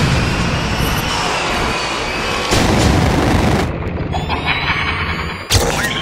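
Horror-trailer sound design: a dense, dark rumbling drone struck by booming hits, one at the start, one about two and a half seconds in and one near the end. A rising high whine builds just before the last hit.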